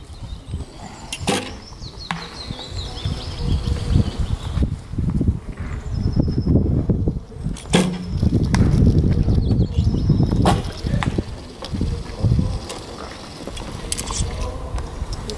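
Recurve bows being shot: a sharp snap as the string is released about a second in, and again at about eight and ten and a half seconds. A loud, uneven low rumble runs under the shots, with a few high bird chirps early on.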